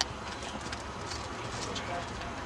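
Hoofbeats of a quarter horse galloping on soft arena dirt, heard faintly through steady background noise, with a short click at the very start.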